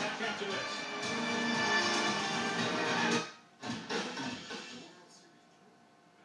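Broadcast music playing from a television's speakers, cutting off suddenly about three seconds in; a brief final burst follows, then it fades to quiet room tone.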